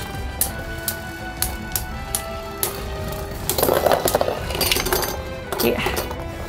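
Two spinning Beyblade Burst tops clinking against each other in a plastic stadium: scattered sharp clicks, then about three and a half seconds in a run of rapid clashing that lasts over a second. Background music runs underneath.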